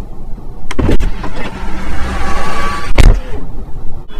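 Tesla Model Y door being opened with its electronic release button. A first thunk comes about a second in, followed by a short motor whir, and a louder thump about three seconds in.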